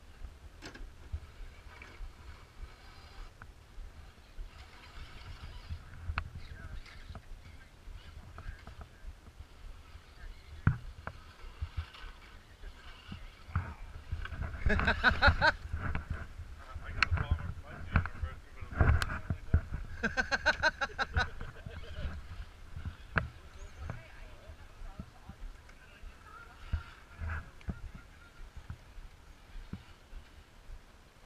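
Steady low wind rumble on the microphone, with a few sharp clicks. Brief voices or calls come in now and then, loudest about halfway through.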